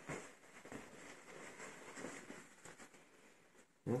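Faint rustling of cycling bib-short fabric as it is handled and turned over.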